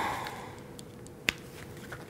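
A single sharp click a little over a second in, from a smartphone being handled, over quiet room tone.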